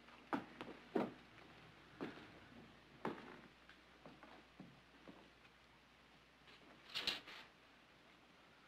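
Slow footsteps on a wooden floor, roughly one a second and uneven, with a louder cluster of knocks or scuffs near the end.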